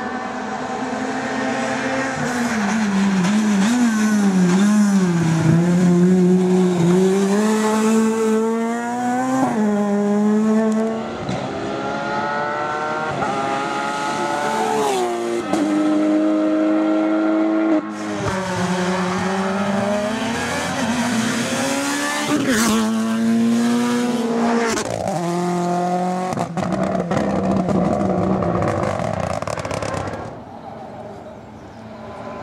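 Rally car engines at full throttle, one car after another: the engine note climbs in pitch and then drops sharply at each gear change.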